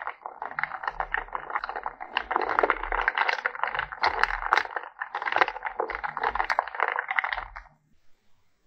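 Stirring in a glass jar: a dense run of quick clicks and crackles that stops suddenly near the end.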